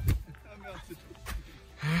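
A single dull thump right at the start, faint talking, then a startled gasp near the end as a hiker slips on the snowy slope.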